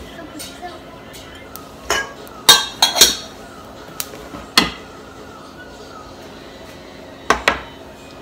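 Dishes and metal utensils clinking and knocking about seven times, with the loudest cluster around two and a half to three seconds in and a pair of knocks near the end.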